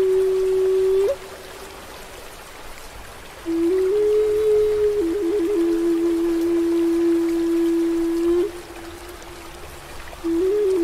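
Native American flute playing slow, breathy phrases. A held note ends with a short upward flick about a second in. After a pause, a new phrase steps up, turns through quick trills and settles into a long held note that stops shortly before the end. A faint steady wash of running water lies under it.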